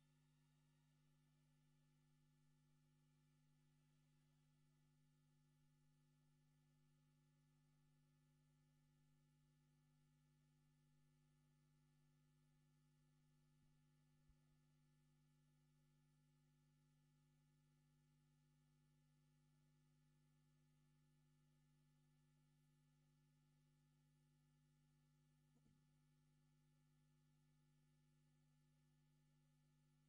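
Near silence: only a faint steady electrical hum on the broadcast feed.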